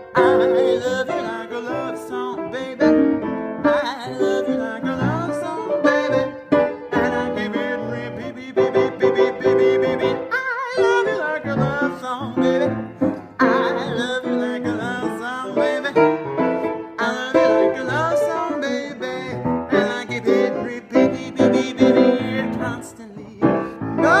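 Grand piano played in a swinging jazz style, with a woman's voice singing over it.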